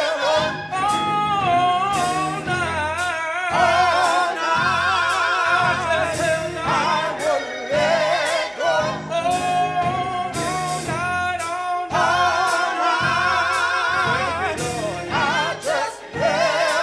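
Gospel song: voices singing with a wide vibrato over a bass line and regular drum beats.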